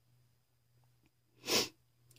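A single short, breathy burst of a woman's breath or throat noise about one and a half seconds in, from someone who has just been coughing.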